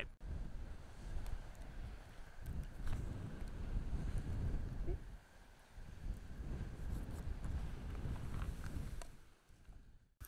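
Wind buffeting the microphone outdoors: a low, uneven rumble that swells and fades, with a brief lull about five seconds in.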